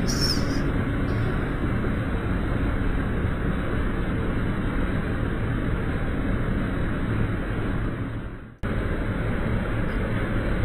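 Water cascading over a mill weir into churning white water, a steady rush. It dips out sharply about eight and a half seconds in and comes straight back.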